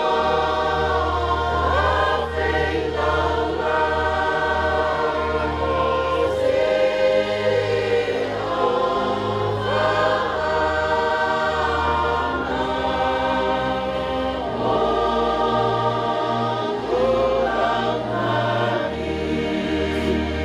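A crowd of guests singing a hymn together in several-part harmony, holding long notes, over a steady low bass note that changes every few seconds.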